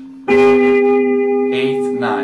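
Guitar notes of an arpeggio plucked about a quarter second in and left ringing as several held tones, played slowly position by position.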